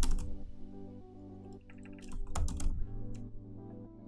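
Typing on a computer keyboard: a few keystrokes at the start and a quick run of keystrokes about two seconds in, over steady background music.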